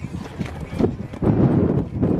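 Hooves of a cantering horse on a sand arena, dull thuds that grow louder a little over a second in.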